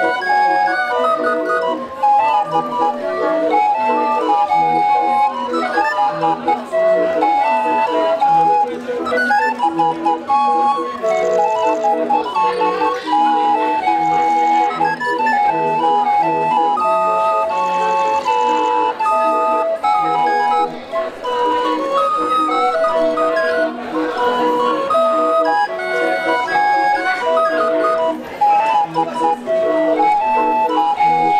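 Hand-cranked barrel organ playing a tune in steady piped notes over a regular low bass note.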